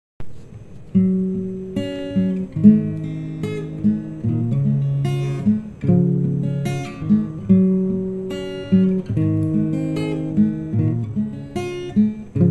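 Instrumental acoustic guitar music: strummed and plucked chords that ring and fade, changing about every second, with no voice.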